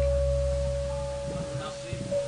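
Gamelan gongs ringing out after being struck: a large gong's deep low hum fades away steadily, while a higher, steady gong tone rings on to the end.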